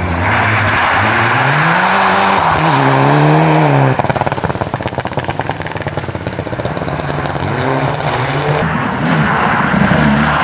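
Mitsubishi Lancer Evolution rally car's turbocharged four-cylinder engine revving up hard through the gears as it drives past. About four seconds in, the engine tone gives way to a few seconds of rapid crackling, and then the revs climb again near the end.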